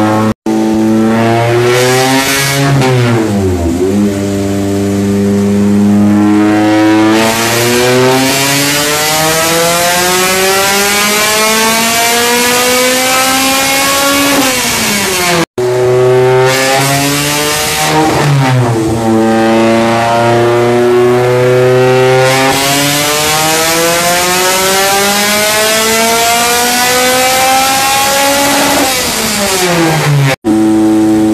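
Supercharged Honda K20 engine in a Civic EG hatch on a chassis dyno, making two full-throttle pulls: each time the revs climb steadily for about ten seconds, then fall away as the throttle is closed. There is a brief dropout between the two pulls.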